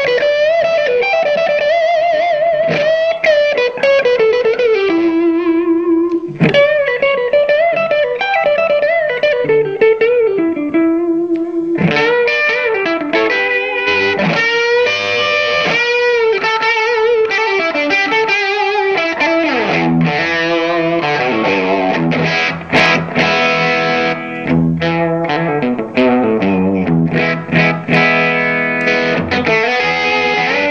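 Gibson SG electric guitar played through a Digitech Bad Monkey overdrive pedal: overdriven single-note lead lines with bends and vibrato, turning about two-thirds of the way through to fuller chords struck in short, choppy strums.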